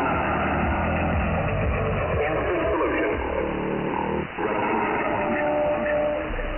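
Shortwave pirate radio signal received in upper sideband through a web SDR: noisy, narrow-band audio full of static, with sliding tones, a brief dropout a little past the middle, and a steady tone near the end.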